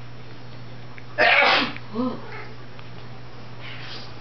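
A single loud sneeze about a second in, followed by a short, quieter voiced sound.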